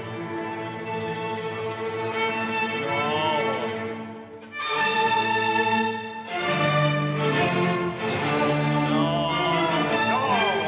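A string orchestra of violins and lower strings playing sustained chords, with a few sliding notes. The sound drops away about four seconds in, then the whole group comes back in, louder.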